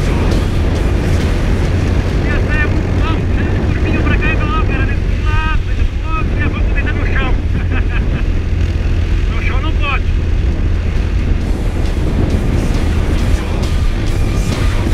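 Motorcycle engine and wind noise from a camera on a bike riding at road speed, a steady low rumble, with short voice-like sounds in the middle.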